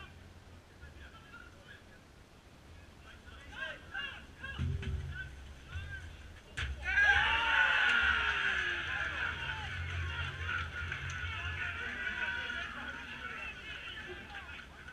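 Football crowd and players erupting in cheering and shouting about seven seconds in as a goal is scored, just after a single sharp knock; before that, scattered shouts on the pitch. The cheering fades slowly.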